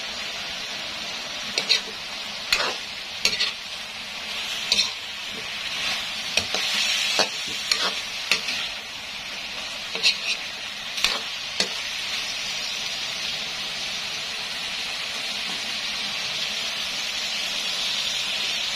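Pork for adobo sizzling in a pan while a utensil stirs it. For roughly the first ten seconds there are sharp scrapes and knocks of the utensil against the pan, then only steady sizzling.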